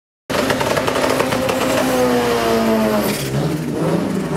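Drag car doing a burnout: the engine is held at high revs while the tyres spin on the track with a dense hiss. The engine note sags slightly, then the revs fall sharply about three seconds in.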